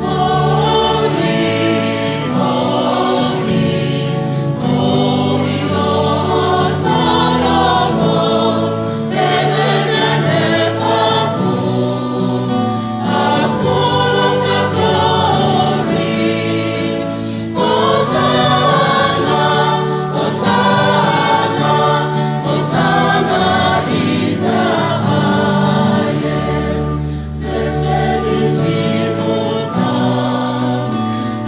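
Mixed church choir of women and men singing a hymn in harmony, in continuous phrases, accompanied by acoustic guitar.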